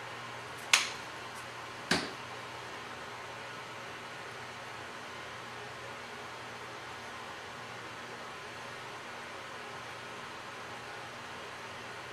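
Quiet steady room hum and hiss, broken by two sharp clicks about a second apart near the start.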